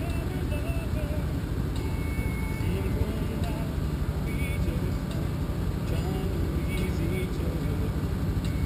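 Chevy S10 Blazer's engine idling steadily, a low even rumble heard from a camera mounted on its hood, with faint distant voices.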